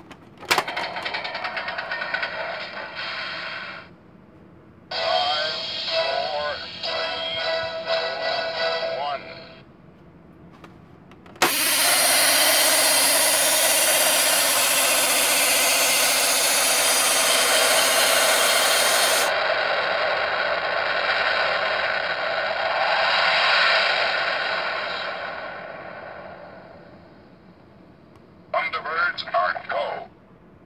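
Electronic sound effects from a Thunderbirds secret-base toy playset: two short clips of voice and music, then a loud steady launch rumble that fades out slowly, and a further short clip near the end.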